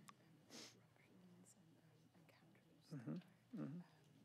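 Faint, half-whispered speech: a woman's low voice quietly interpreting a question into the listener's ear. The voice is heard from well off the microphones, with a hiss about half a second in and two louder spoken bits around three seconds in.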